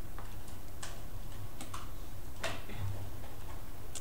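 Light clicks of calculator keys being pressed at an uneven pace, over a steady low hum.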